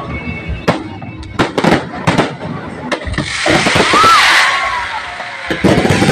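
Aerial fireworks bursting overhead: a quick series of sharp bangs, then a loud, dense crackling hiss from about three seconds in, with a fresh cluster of bangs near the end.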